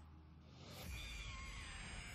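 Faint sound effects from an animated fight: a low hum, then a whooshing hiss with a thin high whine that builds from about a second in.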